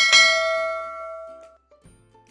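A notification-bell sound effect: one bright ding struck once, ringing out and fading over about a second and a half.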